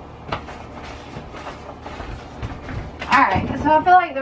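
Small paint roller worked up and down a wallpapered wall, a run of soft, irregular scuffing strokes. Near the end a woman's voice comes in.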